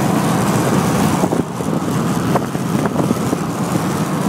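Steady road and wind noise inside a car's cabin at highway speed, with a few light clicks in the middle.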